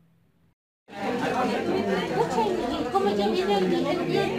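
About a second of near silence, then many women's voices chattering at once in a large room, starting suddenly and carrying on to the end.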